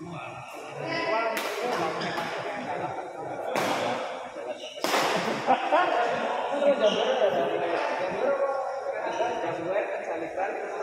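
Badminton rally in an indoor hall: several sharp racket hits on the shuttlecock in the first five seconds, with voices of players and spectators throughout.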